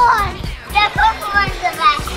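Children's high-pitched excited voices calling out in short bursts over background music.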